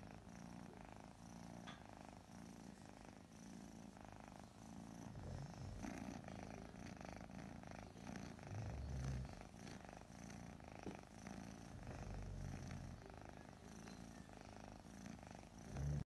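Scottish Fold cat purring faintly while its head is stroked; the low purr swells and fades in slow waves.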